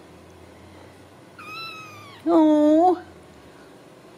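Ragdoll kittens meowing twice: a thin, fainter high mew about a second and a half in, then a louder, lower meow just after two seconds.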